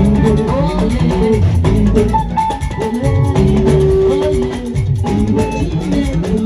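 Live highlife gospel music: guitars and bass over a drum kit and shaker-type percussion, with a group of singers on microphones.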